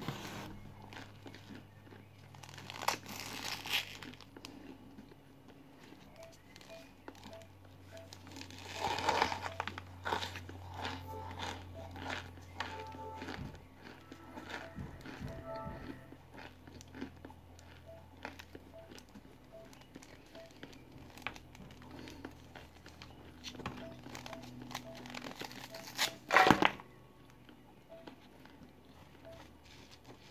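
Lumps of raw cornstarch being bitten and crunched close to the microphone, with the cardboard box crinkling, over quiet background music. There are louder bouts about three and nine seconds in, and the loudest comes near the end.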